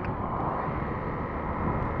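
Steady rush of wind and road noise from a motorcycle cruising along a road, picked up by a helmet-mounted camera, with no distinct events.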